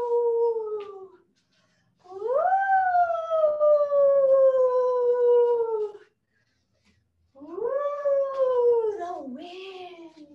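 A woman's voice imitating the wind with long drawn-out "ooh" sounds that slowly fall in pitch: one fading out about a second in, a second held from about two to six seconds, and a third starting past seven seconds that wavers and dips near the end.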